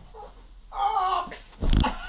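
A toddler's high-pitched whine, then a loud thump near the end as the child tumbles off onto the mattress.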